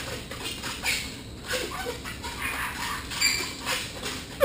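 Latex twisting balloons squeaking and rubbing against one another as they are handled: a run of short, irregular squeaks and rubbery scrapes.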